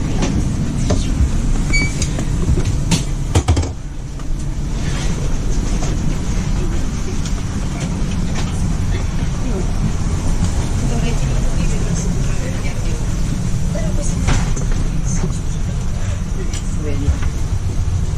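Steady low rumble of an Intercity train's UIC-Z passenger coach running along the line, heard from inside the carriage, with a few sharp knocks about three seconds in and again near fourteen seconds.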